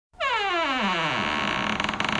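A buzzy electronic sound effect that drops steeply in pitch over about a second, then dissolves into a rough, rapidly flickering noise.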